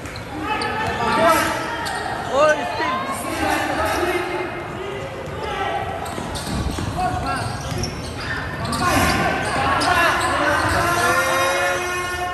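Basketball game on an indoor court: the ball bouncing on the hardwood as it is dribbled up the floor, with several sharp impacts about a second and two seconds in, amid voices calling out across the echoing gym.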